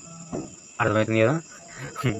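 A man's voice speaking a short phrase, over a steady high-pitched whine that runs underneath throughout.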